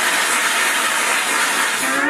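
Audience applauding: a steady wash of clapping just after the song ends.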